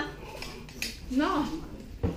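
Metal forks clinking and scraping on ceramic plates during a meal, a few short sharp clicks with a harder knock at the end.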